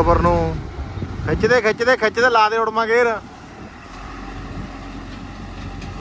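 Panesar self-propelled combine harvester's diesel engine running as the machine drives off, towing its header trolley; the engine sound drops about three seconds in. Loud voice-like calls sound over it during the first half.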